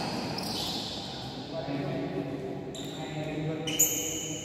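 Indoor badminton play in a large echoing hall: shoes squeaking on the court floor, a sharp hit near the end, and voices in the hall from midway on.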